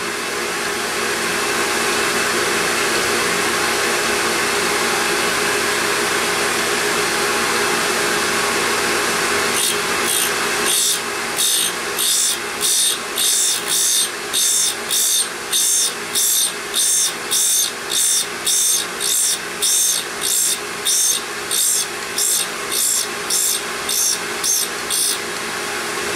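Surface grinder wheel running, grinding the flank of an Acme thread tool bit on its final cut. Steady at first; from about ten seconds in, the grinding comes in short regular bursts, roughly one and a half a second, as the bit passes back and forth under the wheel.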